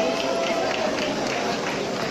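Concert audience clapping, with voices calling out over the applause.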